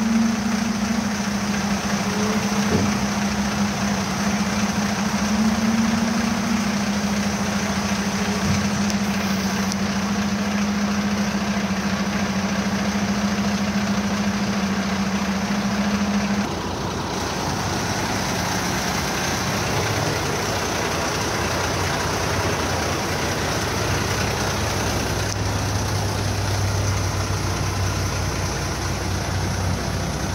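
A 2007 Sterling dump truck's diesel engine running with a steady, even hum. A little past halfway the sound changes abruptly to a lower-pitched, slightly quieter idle, which then carries on steadily.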